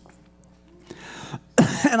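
Short pause with faint room sound, then a man clears his throat sharply about one and a half seconds in, running straight into speech.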